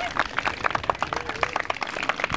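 An audience clapping and applauding at the end of a live song, with separate, irregular claps.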